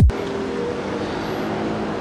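Steady background traffic noise of a city street.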